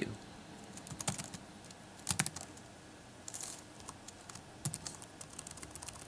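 Typing on a computer keyboard: keys clicking in short irregular runs, with a pause of about two seconds in the middle.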